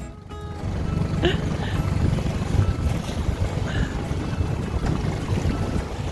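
Inflatable tender under outboard power crossing tidal rapids: a steady rumble of motor, wind on the microphone and rushing water, with nothing standing out above it.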